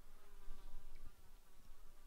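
A small flying insect buzzing, a faint wavering hum that is clearest in the first second, with a single light knock about halfway through.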